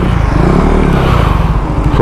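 Motorcycle engine idling with a steady, even beat, while a vehicle passes on the road and its noise swells and fades in the middle.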